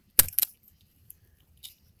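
A blade cutting through a gar's hard, armoured scales and skin: one sharp crunch a fifth of a second in, two quicker crunches right after, then only faint ticks.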